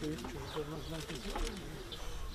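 A pigeon cooing low, with small birds chirping high in the trees.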